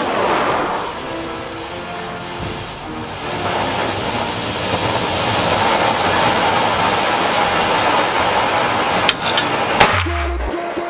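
Fountain firework spraying sparks with a steady loud hiss that builds about three seconds in, with two sharp cracks near the end.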